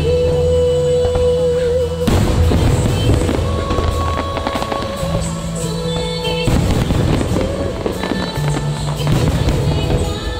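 Fireworks bursting and crackling in a dense run over loud show music. The bursts start about two seconds in, while the music's sustained notes carry on beneath them.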